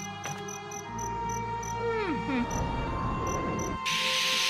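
Cartoon ambience of cricket chirps, about three a second, over a steady held drone. About two seconds in, a falling-pitch magic sound effect with a low rumble marks the witch's transformation into a spider.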